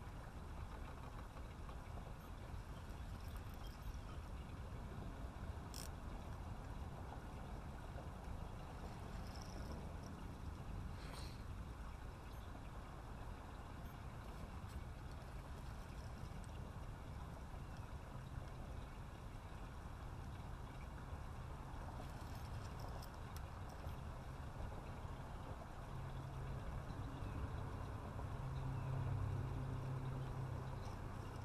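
Low steady outdoor rumble on the water, with a few faint clicks. A motorboat engine's low hum swells over the last few seconds.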